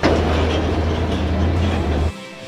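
Heavy lorry's diesel engine running as the truck drives off along a dirt road: a steady low drone with road and body noise on top.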